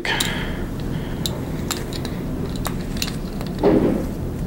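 Light metallic clicks and clinks, about six scattered over a few seconds, as oval carabiners and a Hitch Climber pulley knock together while a prusik cord is wrapped around a climbing line.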